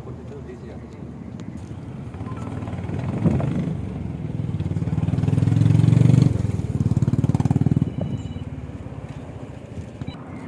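A vehicle engine passing close by, its sound rising to a peak about six seconds in, breaking off briefly as if on a gear change, then carrying on for a couple of seconds and fading.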